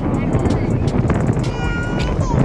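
Wind buffeting the microphone with a heavy low rumble, over faint voices. Near the end someone's voice briefly holds a high, whining note.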